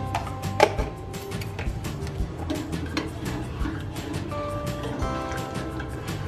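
Background music with held notes over a quick run of light clicks, and a single sharp knock about half a second in.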